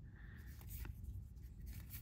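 Faint rustle and soft ticks of baseball cards being flipped by hand, each top card slid off the stack and moved to the back, over a low steady hum.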